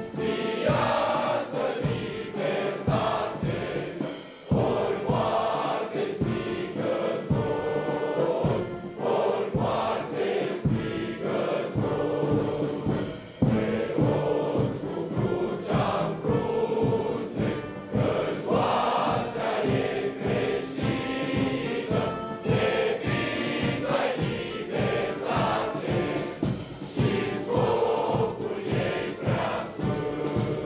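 Many voices singing together in chorus, accompanied by a brass band, with a steady beat.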